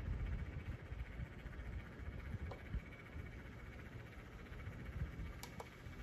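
Quiet room tone: a faint, steady low hum, with a light click about halfway through and two more near the end.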